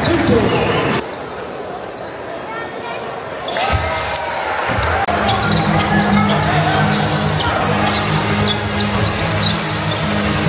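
Basketball being dribbled on a hardwood court, with sneakers squeaking and crowd chatter in a large sports hall. Steady hall music with low sustained notes comes in about five seconds in.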